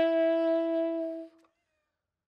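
Selmer Mark VI tenor saxophone with a Theo Wanne Durga 3 metal mouthpiece holding one long, steady note at the end of a phrase; the note stops about a second and a half in.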